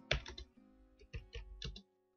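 Computer keyboard typing: a run of quick, uneven keystroke clicks, about a dozen in two seconds, that pause briefly about half a second in.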